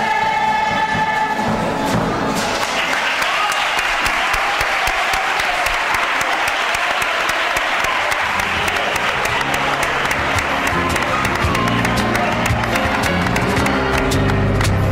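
Singing ends about two seconds in and an audience breaks into sustained applause; about eight seconds in, low instrumental music starts up under the clapping.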